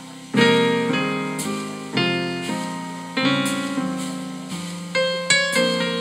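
Digital keyboard played with a piano sound. Chords are struck about once a second and each one fades out, with a quicker run of higher notes near the end.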